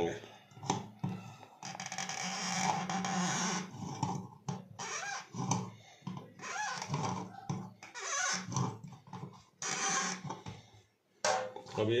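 Pliers gripping and turning a stainless steel sink strainer to tighten it, metal scraping and grating against metal in several short bursts, the longest about two seconds.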